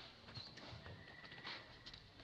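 Faint, scattered light clicks and rustles of a macaque's feet and hands stepping over dry leaves and dirt. A thin steady whistle sounds for about a second in the middle.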